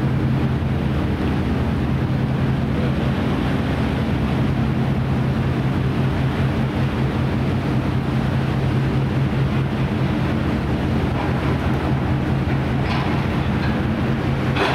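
Steady low drone of the ferry Schleswig-Holstein's engines and machinery, a hum on a few fixed low pitches that does not change. A couple of brief higher sounds come near the end.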